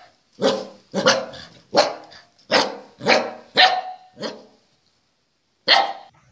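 A puppy barking: seven short, sharp barks about half a second apart, then a pause and one more bark near the end.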